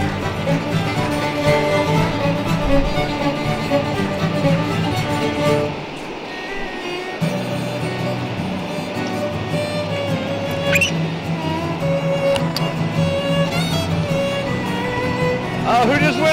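Music with a fiddle over steady string tones, dropping briefly about six seconds in before carrying on.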